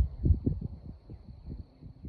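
Low, irregular rumbling and thumps on the microphone, strongest in the first half second and then dying down, with a faint steady high tone underneath.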